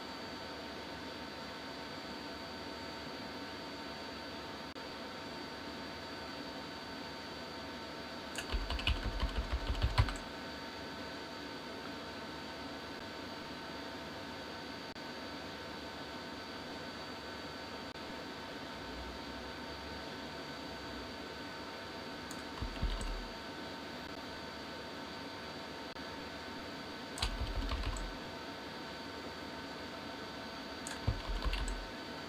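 Computer keyboard keys tapped in short bursts of rapid clicks: a longer burst about eight seconds in and two brief ones in the last third. Underneath is a steady faint hum of room tone.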